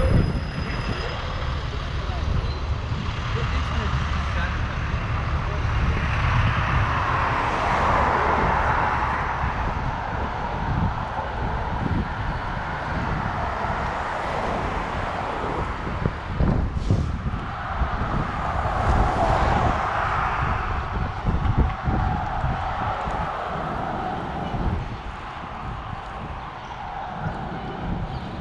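Street traffic noise mixed with wind rumbling on the microphone of a moving camera. The noise swells twice, about eight and nineteen seconds in, and a short knock comes near seventeen seconds.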